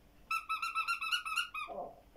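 A children's electronic sound book playing a rapid run of short, high beeping notes, about a dozen tones in just over a second. A brief lower gliding sound follows near the end.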